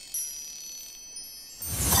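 Cartoon magic-sparkle sound effect: high tinkling chime tones ringing on, renewed just after the start as the magical star flies into place to light up the constellation. Near the end a louder rushing swell builds up.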